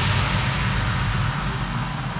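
A rushing noise sound effect with a low rumble beneath it, fading slowly: the whoosh that goes with an animated title card.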